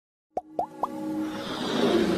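Animated logo intro sting: three quick pops that rise in pitch, about a quarter second apart, then music that builds steadily louder.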